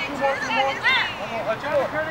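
Several people's voices calling and shouting at once, indistinct, with no clear words.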